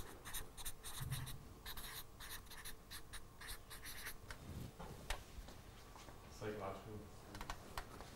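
Felt-tip marker writing on flip-chart paper: a run of short, scratchy strokes as a word is written, thinning out after about five seconds.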